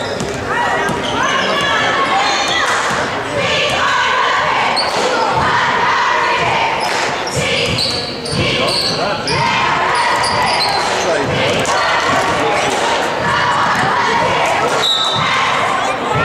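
A basketball being dribbled on a hardwood gym floor, with voices talking and calling out around it, all echoing in a large gym.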